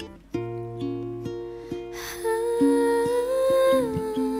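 Pop ballad with acoustic guitar picking. After a brief dip at the start, a woman's voice comes in about two seconds in and holds one long wordless note that steps up and then drops near the end.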